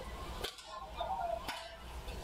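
Badminton rackets striking the shuttlecock in a rally: two sharp hits about a second apart.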